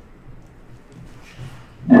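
A pause in a talk: low room noise with a faint breath-like hiss, then a man's voice starts up again with a drawn-out "um" at the very end.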